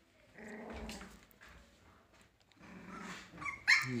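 Three-week-old husky puppies growling at play, two low growls in turn, the first about half a second in and the second about three seconds in, with a louder, sharper cry near the end.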